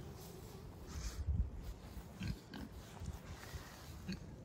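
Faint scattered soft thumps and rustling from a Holland Lop rabbit moving about on the straw inside its wooden hutch, the loudest few about a second in.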